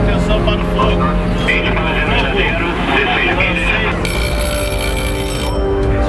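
A voice over a radio or intercom, heard over steady background music, then a high electronic alarm tone that sounds for about a second and a half and cuts off suddenly.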